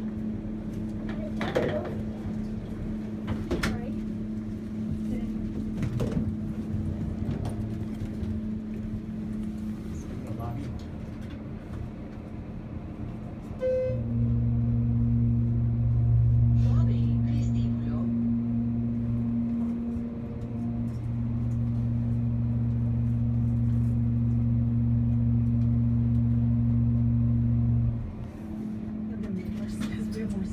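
Hydraulic elevator's pump unit (a Westinghouse car modernized by Schindler) running as the car travels up, a loud steady low hum lasting about fourteen seconds that starts suddenly about halfway through and cuts off suddenly near the end as the car arrives. Before it, a quieter steady hum with scattered clicks and a short beep.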